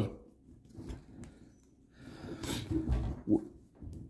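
Faint handling noise of hands gripping and working a replica Zenitco B-13 rail on an airsoft AK, with a short breathy sound about three seconds in.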